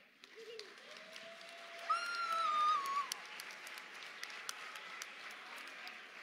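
Audience applauding, with many scattered hand claps. About two seconds in, a single high voice calls out for about a second, the loudest moment, before the clapping goes on more thinly.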